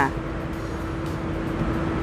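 Steady low background rumble with a faint constant hum, and no distinct event.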